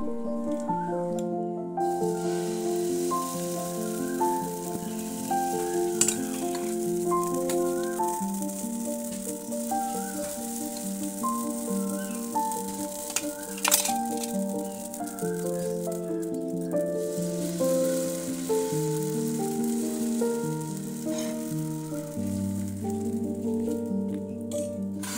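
Instrumental background music with a stepping melody over a dosa sizzling in a hot frying pan; the sizzle fades out about two-thirds of the way through. A single sharp click comes just past halfway.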